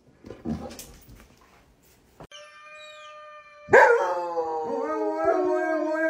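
A shepherd-type dog howling: a long howl that starts loudly about two-thirds of the way in, slides down in pitch and is then held, wavering. Just before it, a thinner steady note is held for about a second and a half.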